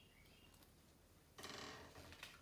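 Near silence, then about one and a half seconds in a brief papery rustle as the pages of a hardcover picture book are handled and turned.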